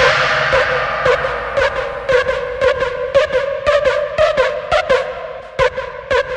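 Drum and bass music. The heavy sliding bass cuts out at the start, leaving a held ringing synth tone under quick, broken percussion hits. These grow quieter, and the beat comes back in near the end.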